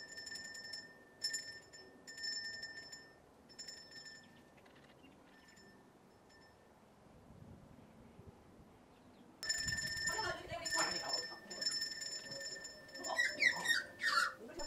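A small hand bell rung in short shakes, fading out after a few seconds, then rung again louder from about nine seconds in. It is the feeding bell that magpies have learnt means food is served.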